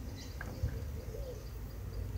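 Quiet room tone: a low steady hum, with a faint wavering birdlike call in the background and a light click.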